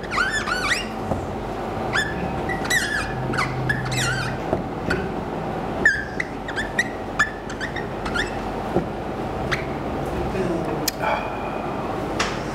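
Dry-erase marker squeaking on a whiteboard as words are written: clusters of short, high squeaks that rise and fall, with pauses between strokes and words.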